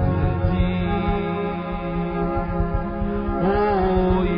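Slow worship music: sustained held chords with a voice singing long notes that rise and fall in pitch.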